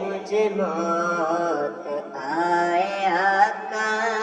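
Devotional naat singing: a voice holds and bends long melodic notes over a steady low drone, with a dip in level about two seconds in.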